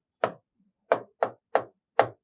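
Short, sharp taps of writing strokes on the glass of an interactive touchscreen board, about five irregularly spaced clicks as digits are written.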